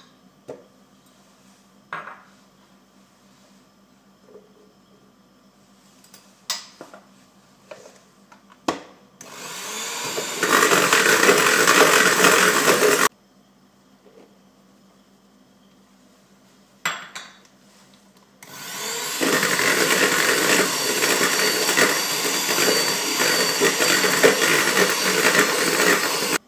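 Electric hand mixer creaming butter and powdered sugar in a bowl. After a few light knocks, it runs for about three seconds and stops abruptly. It starts again about five seconds later and runs to the end.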